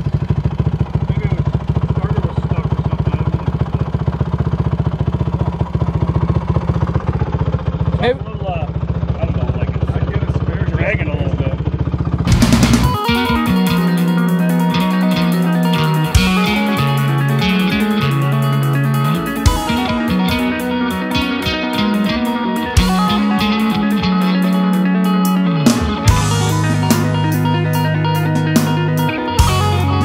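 Honda TRX450R quad's single-cylinder four-stroke engine idling steadily, sounding normal after a starting problem. About 12 seconds in it gives way to loud rock music with electric guitar and a steady beat.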